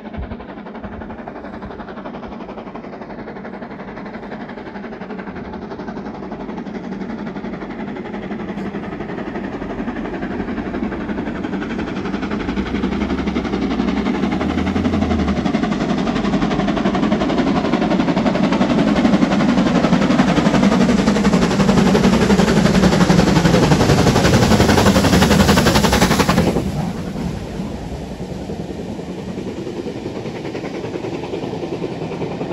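BR Standard Class 7 steam locomotive No 70000 'Britannia' approaching at speed, its rapid exhaust beats growing steadily louder for about twenty-five seconds. The sound cuts off sharply as the engine passes underneath, leaving a quieter rumble from the train.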